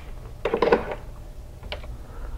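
Brief metallic clatter from the hinged arm of a Prime-Line high security door lock being handled on the door jamb, followed by a single light click near the end.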